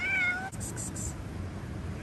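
A stray cat meows once, a short call of about half a second, near the start. Right after it comes a quick hissing 'ks-ks-ks' of a person calling the cats.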